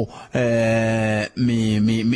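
A man's voice holding two long, level notes, like a drawn-out chant: one of about a second, then a shorter one.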